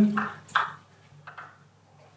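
A few small splashes and drips of aquarium water as a hand and a submersible light sensor are lifted out of the tank, the clearest about half a second in, then fainter ones.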